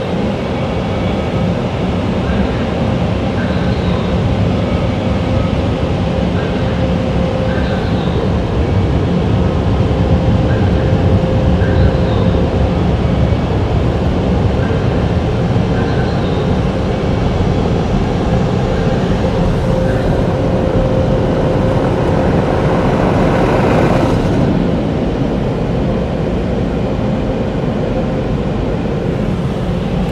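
Automatic car wash air dryers blowing over the car, heard from inside the cabin: a loud steady rush with a steady tone in it, its upper hiss dropping away about 24 seconds in.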